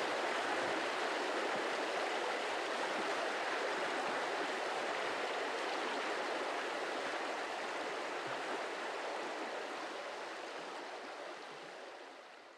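Running water of a river or stream, a steady rushing that slowly fades out over the last few seconds.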